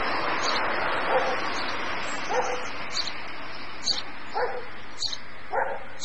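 A dog barking about four times, short single barks roughly a second or more apart, over a steady outdoor hiss, with a small bird giving short high chirps about once a second.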